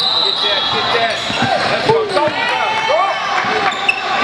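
Basketball dribbled and bouncing on a hardwood gym floor during a game, with short squeaks and player and sideline voices throughout, echoing in the large hall.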